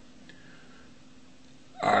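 A quiet pause filled with faint room tone: a thin, steady hum under a light hiss. A man's voice comes back with a single word near the end.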